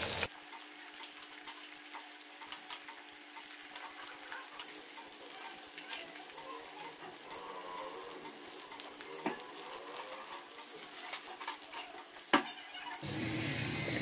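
Sliced onions frying in oil in an aluminium kadai, being browned toward golden: a faint, steady sizzle with scattered fine crackles. A sharp tap comes near the end, with a smaller one a few seconds earlier.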